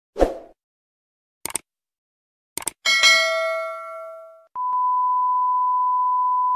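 Edited-in sound effects: a short thud, two pairs of quick clicks, then a bright bell-like ding that rings out and fades over about a second and a half. About four and a half seconds in, a steady single-pitch test-tone beep starts, the tone played with TV colour bars.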